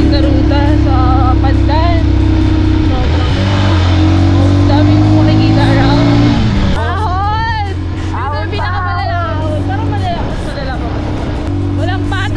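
Small motorcycle engine running at cruising speed, a steady low drone heard while riding. A woman's voice talks over it, with background music underneath.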